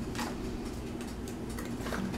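Quiet handling sounds as small polymer clay items are gathered off a table and put into a cardboard box, with a faint click shortly after the start over a low steady hum.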